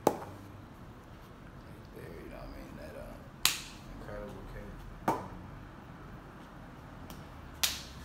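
Four sharp smacks, irregularly spaced a couple of seconds apart, each with a short ring-out in a small room; the first, right at the start, is the loudest.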